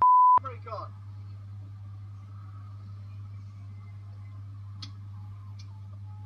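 A short, loud single-pitch censor bleep at the very start that replaces all other sound while it lasts, followed by a brief snatch of voice. A steady low hum runs underneath, with two faint clicks near the end.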